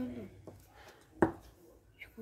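A single sharp click or tap about a second in, from craft materials and tools being handled on a tabletop, after a brief murmur of a voice at the start.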